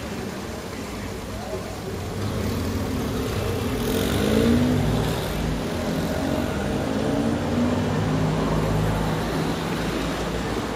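City street ambience: car traffic running by, with people's voices talking, louder from about two seconds in.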